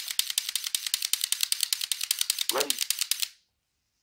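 Rapid dry-fire trigger clicks from an AR-15 fitted with a Mantis Blackbeard auto-resetting trigger system, about ten clicks a second, stopping a little over three seconds in.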